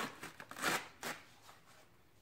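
A dyed paper coffee filter being torn in half by hand: a few short papery rips and rustles in the first second or so.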